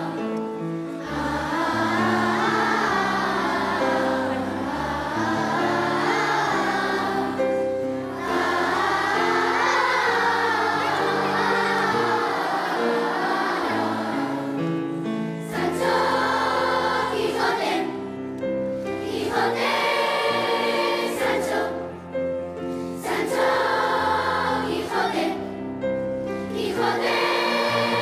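A large children's choir singing in phrases, with brief pauses between them.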